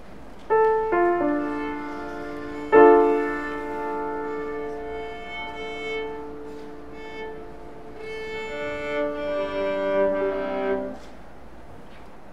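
Viola and grand piano playing a slow, held passage. Piano chords enter about half a second in, with the loudest chord near three seconds, and the music breaks off about eleven seconds in.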